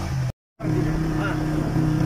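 A vehicle's engine running steadily while driving, with a brief complete drop-out in the audio about a third of a second in.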